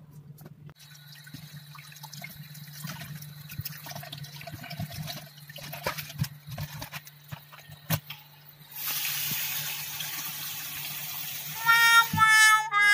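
Tap water running into a stainless steel sink while raw meat is rinsed by hand, with splashing and occasional knocks against the sink. About nine seconds in, a louder, even hiss of rushing water takes over. A steady low hum sits underneath.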